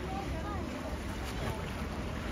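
Wind rumbling steadily on the microphone, over faint, distant voices.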